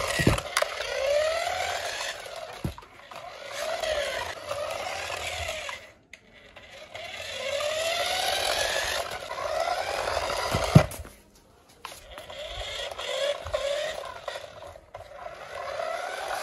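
Electric drive motor and gears of a small remote-control toy pickup truck whining in repeated runs, the pitch rising and falling as it speeds up and slows while driven forward and back. It pauses twice, and a sharp knock about eleven seconds in is the loudest sound.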